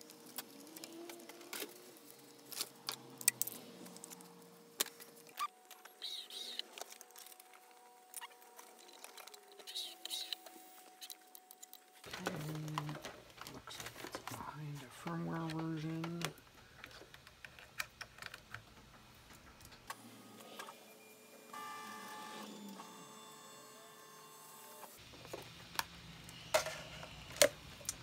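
Light clicks, knocks and rustling of hands working the wiring harness and plugging connectors into a 3D printer's electronics, in several short cut-together stretches. Brief muffled voice sounds come in near the middle.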